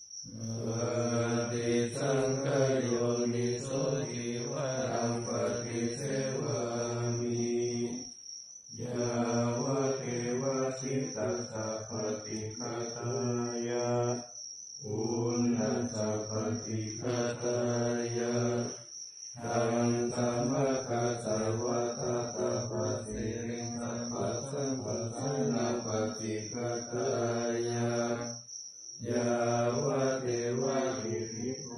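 Thai Buddhist monks' morning chanting (tham wat chao) in Pali: low male voices reciting in long, even phrases, breaking off briefly for breath about four times.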